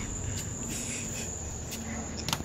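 Outdoor insect chorus, crickets or similar, keeping up a steady high-pitched trill, with a few faint clicks.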